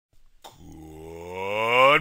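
A drawn-out, voice-like tone that rises slowly in pitch and grows steadily louder for about a second and a half, breaking off as speech begins.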